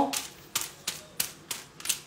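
Tint brush dabbing and stroking hair colour onto hair laid over aluminium foil, making a run of short, sharp ticks about three a second.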